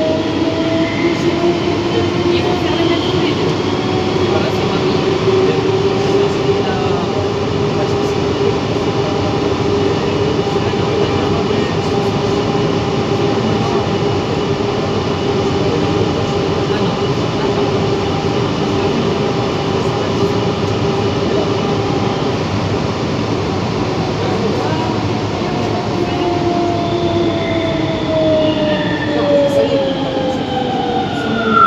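Siemens/Matra VAL 208 rubber-tyred metro train running through a tunnel. A whine from the electric traction drive rises in pitch at first, holds steady at cruising speed, then falls over the last few seconds as the train brakes for the next station. A steady rolling rumble runs underneath.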